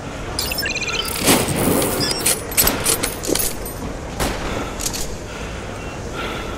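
Edited-in sound effects: a quick run of electronic beeps, then a rapid series of sharp gunshot-like bangs and crackles for about four seconds, loudest a little over a second in.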